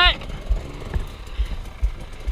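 Dirt bike engine running at low revs while the bike rolls slowly over a rough bush track, with a few dull low thumps.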